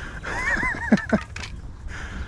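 A man laughing, a quick run of high-pitched rising-and-falling peals that drop lower near the middle.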